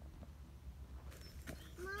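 Quiet outdoor ambience with a few faint soft ticks and rustles. Near the end a high voice calls "Mom".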